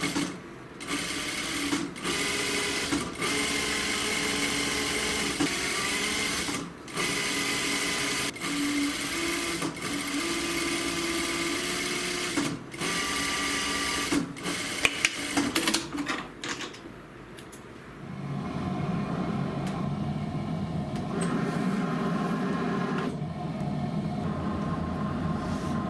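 Industrial lockstitch sewing machine stitching a pocket flap into a double welt, running in bursts of one to several seconds with short stops between, and a few sharp clicks about fifteen seconds in. For the last several seconds a lower, steady hum takes over.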